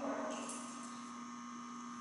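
Steady low electrical hum with a fainter higher tone, with a brief faint rustle just after the start.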